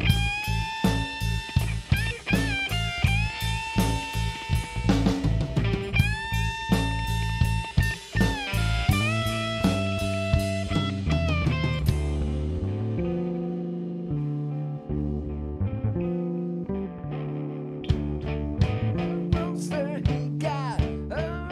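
Live rock band: an electric guitar plays a lead line of held, bent notes over bass guitar and a Gretsch drum kit. About twelve seconds in, the drums drop away, leaving guitar and bass, and drum hits come back in near the end.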